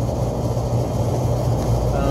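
Steady low hum and rumble of running machinery, unchanging throughout.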